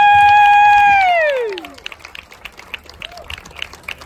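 A loud held "woo" whoop from a listener, sliding up, holding for about a second and falling away, followed by scattered applause as the song ends.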